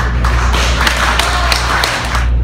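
An audience applauding: a few separate claps build into dense, steady clapping, over a low steady hum.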